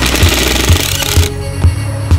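A cordless power drill runs in one burst for about the first second and stops. Background music with a steady beat plays throughout.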